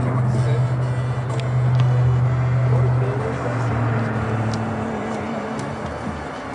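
A steady low hum, the loudest sound, that fades out about four and a half seconds in, with a few faint sharp ticks over it.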